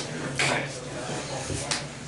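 Light handling noises of playing cards and game pieces on a tabletop playmat: a short rustle about half a second in, then a soft thud and a sharp click near the end.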